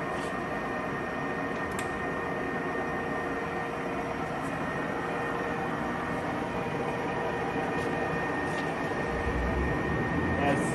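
Sharp 1880CL gap-bed engine lathe running under power with its spindle turning: a steady geared-headstock hum with a thin, steady high whine.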